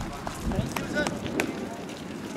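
Footfalls of a group of runners passing close by on a wet synthetic running track, with several sharp strikes in the middle, over a background of voices.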